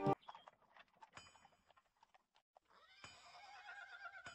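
Horse hooves clip-clopping with a few scattered knocks, then a horse whinnying from about three seconds in, a long wavering call.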